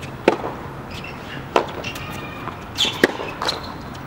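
Tennis ball struck by rackets during a rally: three sharp hits about a second and a half apart, over wind noise on the microphone.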